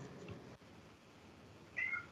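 Mostly near silence, then near the end a single short meow from a cat, its pitch bending downward.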